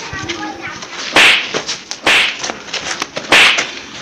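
Three loud, sharp hits about a second apart as two men grapple in a scuffle, with a brief voice at the start.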